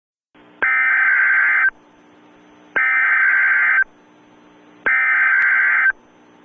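Emergency Alert System SAME header: three identical bursts of screeching digital data tones, each about a second long and about two seconds apart, with a faint hiss between them.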